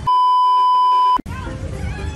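A loud, steady electronic beep tone at a single pitch, about 1 kHz, lasting just over a second and cutting off suddenly, with the sound around it blanked out.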